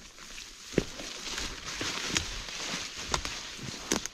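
Leafy undergrowth and branches rustling as a person pushes through it on foot, with footsteps and a few sharp twig snaps.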